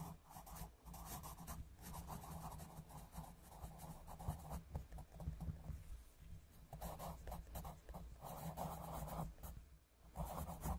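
Pencil scratching on paper in quick back-and-forth colouring strokes, coming in bursts with short pauses.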